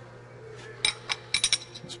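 Loose steel engine parts clinking together as they are picked up by hand: a quick run of about six light metallic clinks, starting about a second in, over a faint steady hum.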